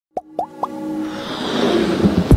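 Synthesized logo intro sting: three quick blips that each slide upward in pitch, then a whoosh that swells steadily louder.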